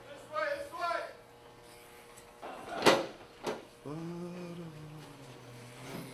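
Corded electric hair clippers buzzing with a steady low hum while cutting hair close to the scalp. A brief voice sounds near the start, and a sharp knock comes about three seconds in, followed by a softer one.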